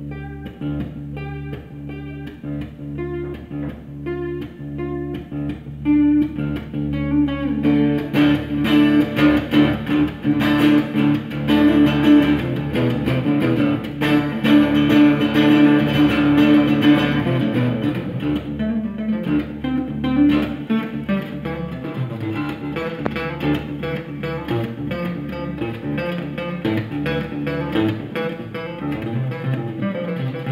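Solo acoustic guitar playing an instrumental passage. It starts as separate picked notes, grows louder and fuller a few seconds in, then eases back to lighter picking for the second half.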